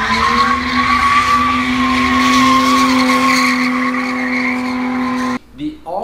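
Jaguar F-Type spinning donuts: the engine held at a steady high rev while the rear tyres squeal and skid. It starts abruptly and cuts off suddenly about five seconds in.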